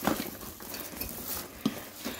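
Rustling of a canvas tote bag and the shopping inside as hands rummage through it and lift out a wine bottle, with a sharp knock at the start and another about a second and a half in.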